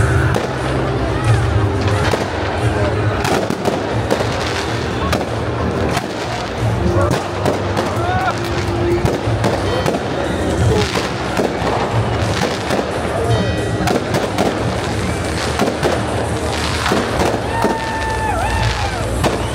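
New Year fireworks going off, with many scattered bangs and crackles throughout, over the voices of a crowd and music playing.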